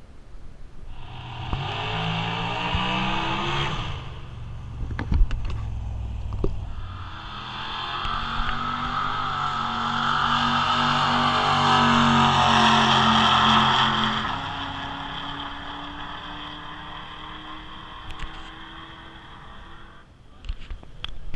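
Drag-racing car engine at full throttle on the strip, heard from the stands: a short burst of revving in the first few seconds, a couple of sharp cracks, then a long hard pull whose engine note climbs, is loudest just past the middle, and fades away as the car runs down the track.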